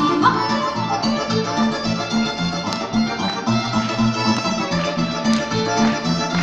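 A cimbalom folk band playing an instrumental passage live: violin and accordion over a steady, pulsing double-bass line, with the cimbalom filling in beneath.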